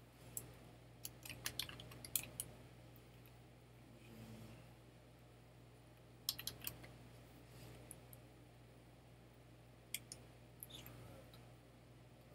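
Computer keyboard typing in a few short bursts of keystrokes, with a few separate clicks, over a faint steady low hum.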